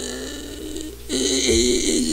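A man's voice: a drawn-out word trails off, then about a second in comes a held, wordless vocal sound, fairly steady in pitch, lasting about a second.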